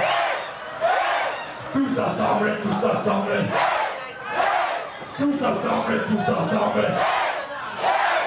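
Club crowd chanting and shouting together in unison, in repeated held phrases about two seconds long with short breaks between them.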